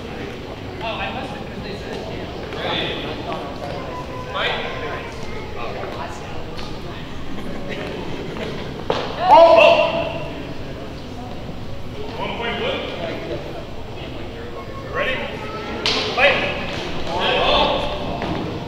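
Training longswords clacking together in a fencing exchange, with sharp hits about halfway through and again near the end, the loudest followed by a shout. Voices and scattered chatter run throughout, echoing in a large gym.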